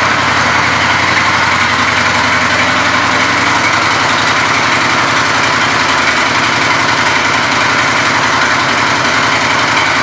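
2004 Honda VTX 1300C's V-twin engine idling steadily.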